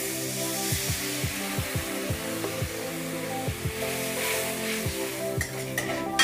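Water poured into a hot aluminium kadai of fried onions and spice masala, the oil hissing and sizzling hard at first and easing off near the end. Background music with a steady low beat plays underneath.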